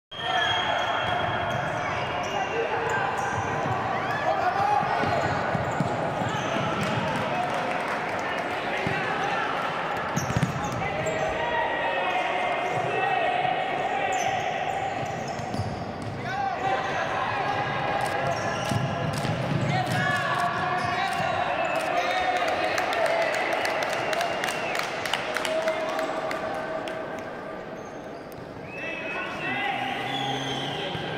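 Futsal being played in a large indoor sports hall: the ball kicked and bouncing on the wooden court, with players' shouts and calls throughout.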